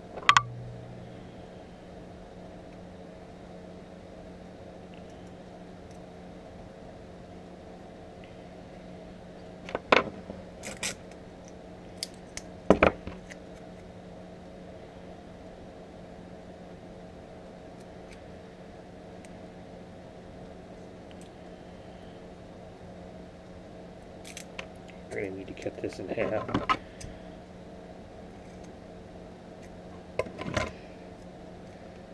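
Steady room hum with a few short, sharp taps and clicks from small hobby tools and masking tape being handled on a wooden workbench.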